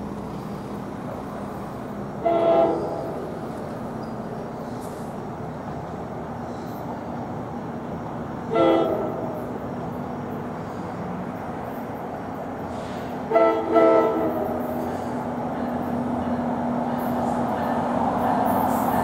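Locomotive air horn sounding the grade-crossing signal as a train approaches: two long blasts several seconds apart, then a short one and a long one close together. The rumble of the approaching train grows louder toward the end.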